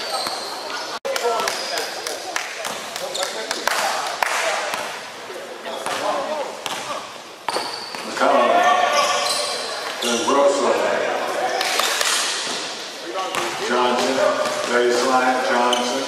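A basketball bouncing on a hardwood gym floor in repeated sharp impacts, with players' indistinct shouts and talk ringing in a large gym. The sound briefly cuts out about a second in.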